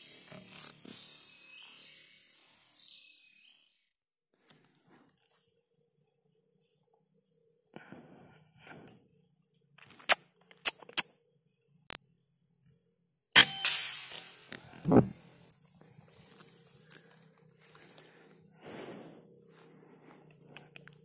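A single rifle shot about 13 seconds in, sharp and loud, preceded by a few sharp clicks from handling the gun.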